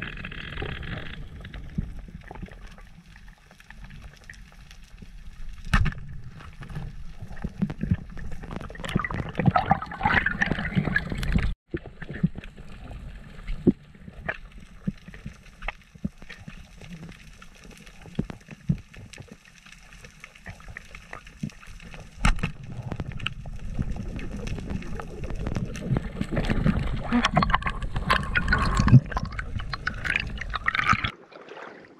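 Underwater sound picked up by a camera on a speargun during a dive: water gurgling and sloshing around the housing over a low rumble, with scattered clicks and knocks. The sound cuts out completely for a moment a little before halfway, and the loudest sharp knock comes near the end.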